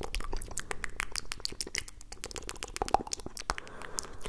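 Rapid, wet mouth and tongue clicks made right up against a microphone, a dense stream of sharp pops that thins out near the end.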